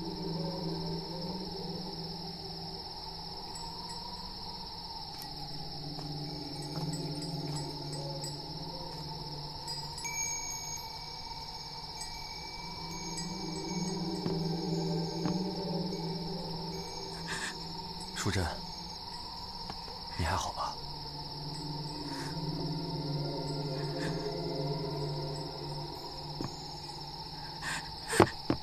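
Crickets trilling steadily in a night-time insect chorus, over a low sustained drone that swells and fades several times. Two brief downward-sweeping sounds come a little past the middle.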